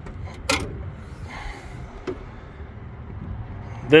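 Car hood being opened: a sharp click of the hood latch releasing about half a second in, a short rustle as the hood goes up, and a lighter click about two seconds in.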